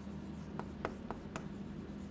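Chalk writing on a chalkboard: several short, scratchy strokes and taps as letters are formed.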